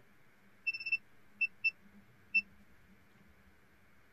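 Short high-pitched electronic beeps from a device: a quick run of beeps about a second in, then three single beeps, over a faint steady hum.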